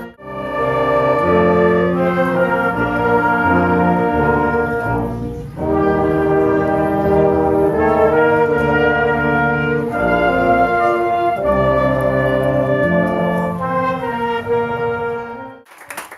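Youth wind band of saxophones, trumpets and trombones playing held chords that move from one to the next, with a brief dip about five and a half seconds in. The music cuts off suddenly just before the end.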